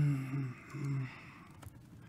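A man's voice making two short wordless murmurs in the first second, followed by a few faint keyboard clicks.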